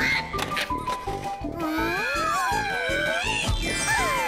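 Cartoon background music with squeaky sound effects that slide up and down in pitch over it in the second half, and a low thump a little past three seconds in.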